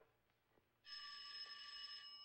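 An old electromechanical telephone bell ringing for an incoming call: one ring of about a second, starting suddenly just before the middle, its bell tone lingering as it fades.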